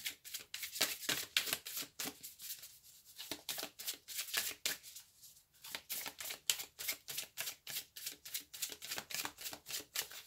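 A deck of oracle cards being shuffled by hand: a quick, uneven run of crisp card snaps and slides, pausing briefly twice.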